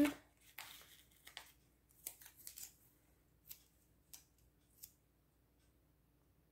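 Faint paper handling: a handful of short, crisp rustles and ticks as a paper sticker is peeled off its backing sheet and handled, dying away about a second before the end.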